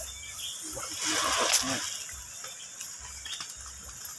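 Nylon cast net rustling and scraping against river stones as fish are worked loose from the mesh, with a louder burst of rustling about a second in.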